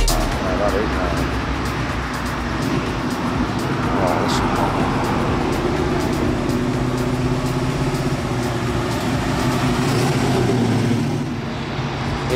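Cars driving through a roundabout, led by the engine of a classic American muscle car running steadily and rising in pitch as it accelerates round towards the camera.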